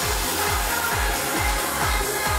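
Music with a steady kick drum, about two beats a second.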